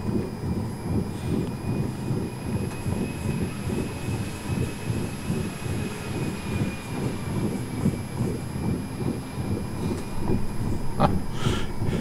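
Car driving slowly over a rough country road, a steady low rumble broken by irregular jolts from the road surface. A faint thin high whine runs through most of it.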